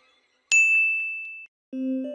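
A single bright, high-pitched ding sound effect that rings for about a second and then cuts off. Near the end, soft music of mallet-percussion notes begins.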